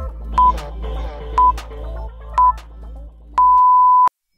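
Workout interval timer counting down over background music: three short high beeps a second apart, then a longer beep about three and a half seconds in that marks the switch between work and rest. The music fades out just before the long beep.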